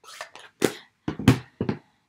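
Plastic ink pad cases clacking as they are snapped shut and stacked on the desk: several sharp clacks, the loudest a little over a second in.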